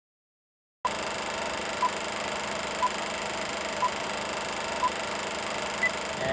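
Silence cuts into a steady hiss. Over it, short electronic beeps sound once a second: five at one pitch, then a higher beep near the end, like a countdown.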